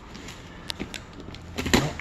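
Utility knife blade dragging along the taped edge of a cardboard box, slicing packing tape with a low scraping and a few small clicks, one sharper near the end. The blade is one its user thinks is dull.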